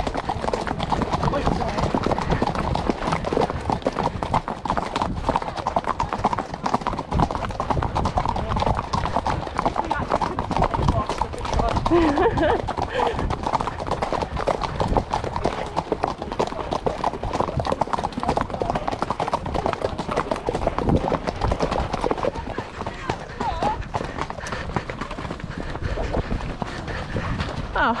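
A ridden horse's hooves clip-clopping steadily along a muddy dirt track, heard up close on the horse, with indistinct voices of other riders underneath.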